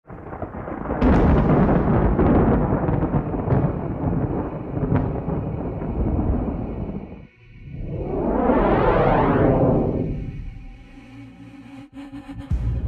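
Cinematic intro sound design: thunder-like rumbling with a few sharp booming hits for several seconds, a brief drop, then a swelling whoosh that builds, peaks about nine seconds in and fades away under a faint held tone.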